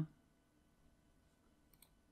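Quiet room, then two faint computer-mouse clicks in quick succession near the end.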